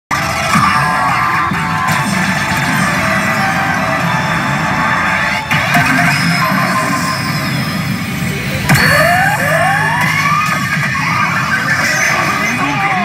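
Pachinko machine (PA Hana no Keiji Ren) playing loud presentation music and sound effects from its speakers. Sudden hits come about five and a half and nine seconds in, and rising sweeps of effects follow the second one.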